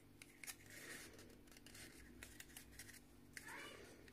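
Near silence, with faint rustling and a few light clicks of paper being handled as a paper comb is pushed into a slit in a rolled paper cone.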